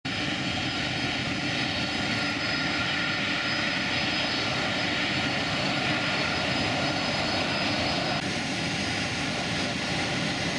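Jet airliner engines running at taxi power: a steady rushing roar with a thin high whine over it. The brightest top of the sound dulls slightly about eight seconds in.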